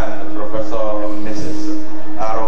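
A man speaking into a microphone over a hall's PA system, with a steady tone held beneath the voice.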